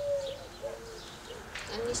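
Small birds chirping in short, quick notes, with a dove cooing low underneath. A woman's voice starts again near the end.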